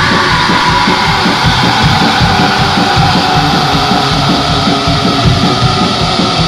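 Black metal band playing at full volume: a wall of distorted electric guitar over fast, driving drums.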